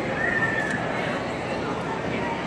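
A horse whinnying: one short, high call shortly after the start, heard over people talking.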